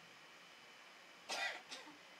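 A person coughing twice in quick succession, the first cough louder, a little past the middle of an otherwise quiet stretch.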